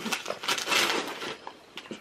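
Tissue paper rustling and tearing as a cardboard gift box is unwrapped, in a few short crackly rips.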